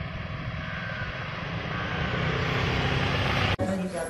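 A steady, noisy din with indistinct voices in it, slowly growing louder, then cut off abruptly near the end.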